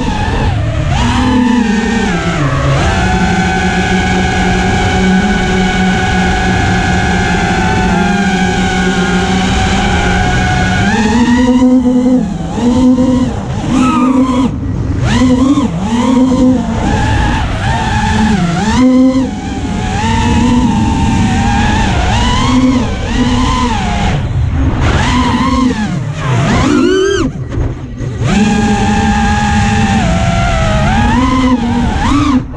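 FPV racing quadcopter's brushless motors and propellers whining. The pitch holds steady for several seconds early on, then rises and falls quickly over and over with the throttle as it manoeuvres.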